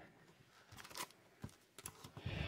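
Near silence with a few faint clicks and taps of trading cards being handled and laid onto a stack, about a second in and again near the end.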